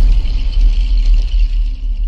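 Deep, steady rumble of a cinematic logo-intro sound effect, the tail of a boom, with a faint high shimmer above it, slowly fading near the end.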